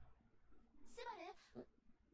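Near silence, with a faint, short, high-pitched voice about a second in, from the anime episode playing quietly in the background.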